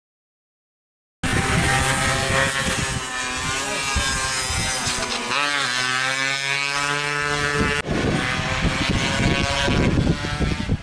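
Race-tuned Yamaha F1ZR two-stroke engine revving hard, held at high revs with its pitch wavering, dropping and climbing again about halfway through. It starts abruptly after about a second of silence.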